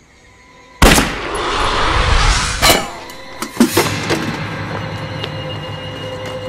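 Drama gunfire sound effects: a sudden loud shot or blast about a second in, trailing off in about two seconds of crackling noise, then a few more sharp shots, under tense film music with held tones that takes over in the second half.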